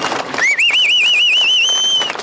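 A whistle blown in one long warbling blast of about a second and a half, rising in pitch at the start and held steady at the end, over the noise of a large outdoor crowd.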